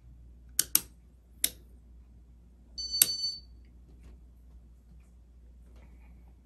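Sharp switch clicks from a Casablanca Spirit of Saturn ceiling fan's light kit as the light is switched off: two quick clicks, then another, then a louder click with a brief high ringing clink about three seconds in. A faint low steady hum of the running fan lies underneath.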